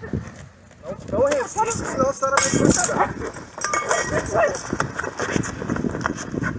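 Unintelligible raised voices and cries from a struggle as a woman is seized, with a burst of rustling and handling noise about two and a half seconds in.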